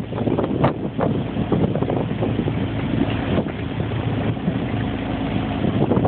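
Small outboard motor running steadily, pushing a dinghy through choppy water, with wind buffeting the microphone.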